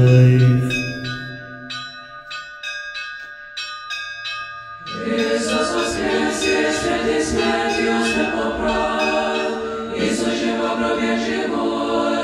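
A choir's chanted line dies away, then small bells jingle in quick shakes for a few seconds. At about five seconds an Orthodox choir begins singing again, a cappella and in full voice.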